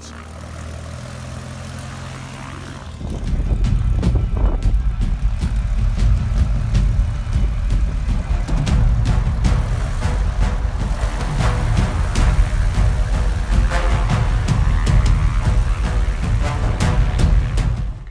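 Light single-engine aerobatic aeroplane's piston engine and propeller. It runs steadily and moderately for about three seconds, then comes up suddenly to a loud, rough full-power rumble that holds, as on a takeoff run.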